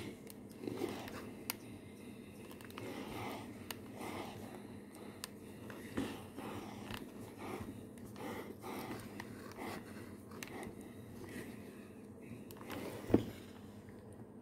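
Faint scraping and rustling of a Tefal steam iron moving over a cloth-covered surface while fingers work a crochet motif, with scattered light clicks. Near the end, a single sharp knock as the iron is stood upright on its heel.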